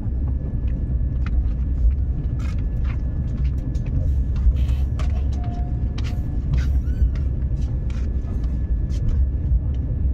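Low, steady rumble of a passenger train coach rolling slowly out of a station, heard from inside the coach, with scattered clicks and knocks from the wheels and the carriage.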